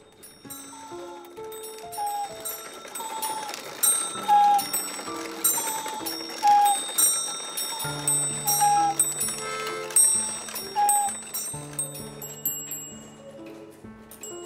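The wooden pipes of a mechanical nativity scene playing a slow tune, with the steady clicking and ticking of its wooden mechanism. Deeper held notes join about eight seconds in.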